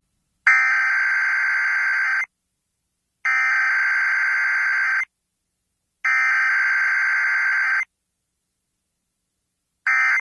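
Emergency Alert System SAME header: three bursts of screeching digital data tones, each just under two seconds long and about a second apart. Near the end comes the first of the short end-of-message data bursts.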